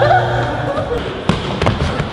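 Basketball bouncing on a hardwood gym floor: a few sharp thuds in the second half, among voices in the hall.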